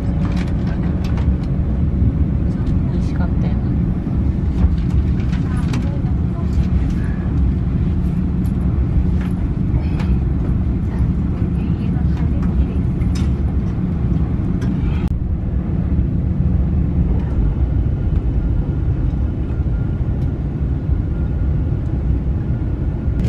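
Steady low rumble of a moving train heard inside the passenger carriage, with scattered clicks and knocks in the first part.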